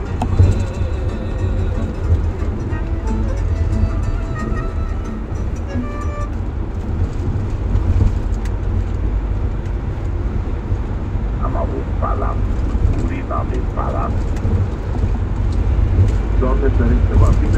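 Inside a moving minibus: the steady low drone of engine and tyres on the road. Under it, a radio plays faint music and then brief talk.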